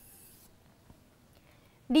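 A stylus drawn down the screen of an interactive display board in one long stroke: a faint, high scratchy hiss lasting about half a second, then near quiet.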